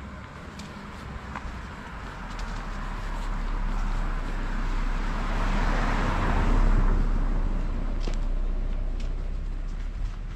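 A passing vehicle: a rushing noise that builds over several seconds, peaks about two-thirds of the way through, then fades, over a steady low rumble.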